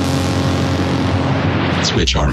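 Electronic dance music in a breakdown: the beat drops out, leaving a held bass chord under a rushing white-noise sweep that dulls toward the end as a filter closes.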